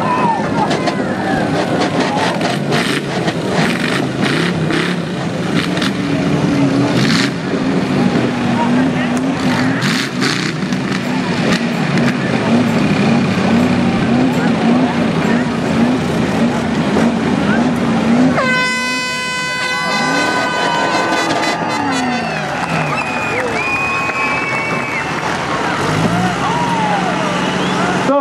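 Demolition derby car engines running and revving with the knocks of collisions, over crowd noise. About eighteen seconds in, an air horn blows for a couple of seconds, marking the end of the heat.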